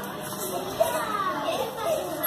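Young children's voices chattering indistinctly, several high-pitched voices overlapping.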